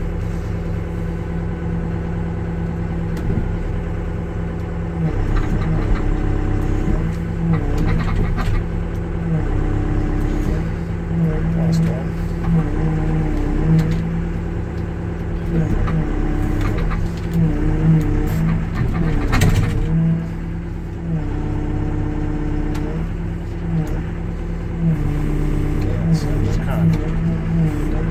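Komatsu WB-150AWS backhoe's diesel engine running under hydraulic load, heard from inside the cab, its note dipping and rising every second or two as the boom and hydraulic thumb grab and lift logs. A couple of short knocks, about a third of the way in and again about two thirds in.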